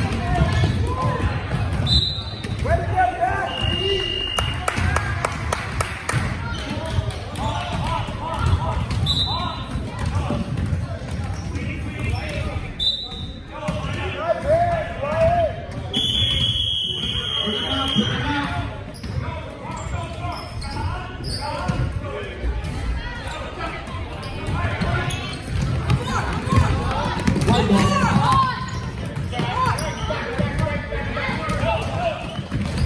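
A basketball dribbled on a hardwood gym floor, with repeated low thuds over the indistinct chatter of spectators in a large echoing gym. Several brief high squeaks cut in, and one longer high tone sounds a little past the middle.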